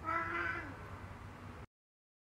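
A cat's meow, one drawn-out 'nyaan' under a second long that dips in pitch at the end. The sound cuts off abruptly about a second and a half in.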